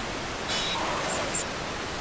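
Digital glitch sound effect for a logo sting: a steady static-like hiss with a brief brighter burst about half a second in and two short, high electronic chirps a little after one second.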